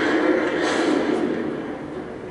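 A towed artillery gun firing, heard as a loud blast at the start that fades away over about a second and a half. It is played back over a loudspeaker into a room, so it sounds thin, with little deep rumble.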